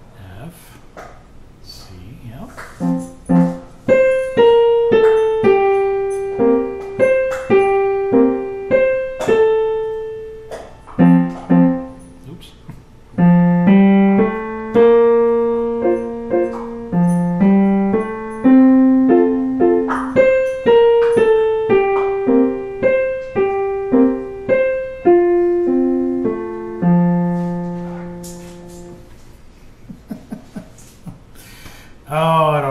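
Digital piano playing a slow, simple waltz in F major in 3/4 time, a single-line melody over low left-hand notes, at a beginner's practice pace. The playing starts about three seconds in, breaks off briefly around the middle, resumes, and ends on a held low note.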